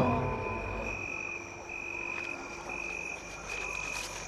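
Crickets chirring in a steady, high-pitched sound-effect ambience, with short breaks in the trill. A musical sting dies away at the very start.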